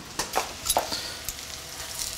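Crumb-coated French-toast slices frying in butter in a pan on a gas range, with a steady sizzle and a few light knocks in the first second or so.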